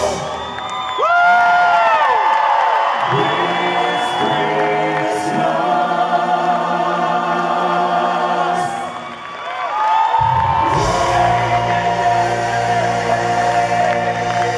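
Live rock band with a lead singer's sliding, held notes over a backing choir, heard through a hall's amplification. The bass and drums drop out about three seconds in and come back about ten seconds in.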